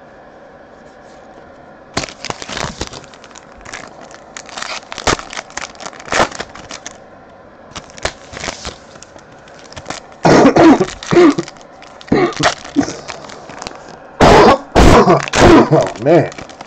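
Foil trading-card pack wrappers crinkling and cards being handled, with scattered sharp crackles. About ten seconds in, and again near the end, a person coughs loudly.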